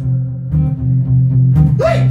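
Acoustic guitar played in a steady, low, repeating riff between sung lines. A man's singing voice comes back in near the end.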